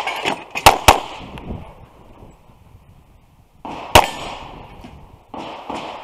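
Pistol shots from a red-dot-sighted semi-automatic handgun: two quick shots, a quarter second apart, just under a second in, then a single shot about four seconds in.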